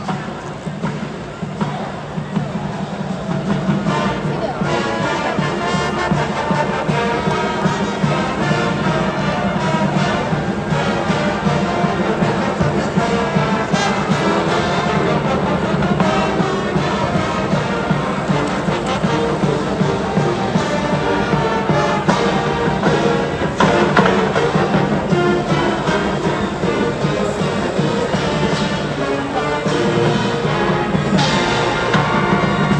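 College marching band playing a tune in the stadium stands, brass and sousaphones with drums.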